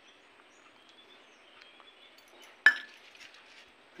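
A single sharp metallic clink of a small steel container knocking against a steel mixing bowl, about two and a half seconds in, with a brief ring after it; faint handling noise otherwise.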